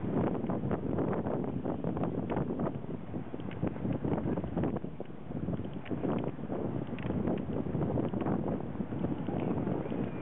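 Wind buffeting a handheld camera's microphone: a dense, uneven noise with irregular gusts.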